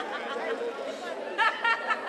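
Only speech: background chatter of people talking, with a voice speaking briefly near the end.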